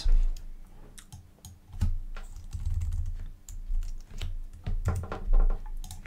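Computer keyboard and mouse clicking: an irregular run of sharp key and button clicks, mixed with a few low thumps.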